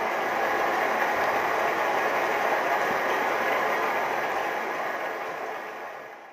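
Audience applauding: a dense, steady patter of many hands clapping that fades out near the end.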